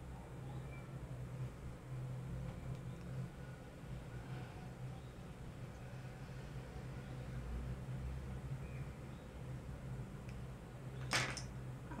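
Quiet room tone with a steady low hum; any brush strokes on the eyelid are too faint to pick out. Near the end a short click and a spoken word break in.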